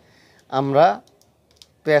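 A few faint, light clicks and taps of fingers and slot insulation being worked into the slots of a BLDC motor stator, after a short spoken word.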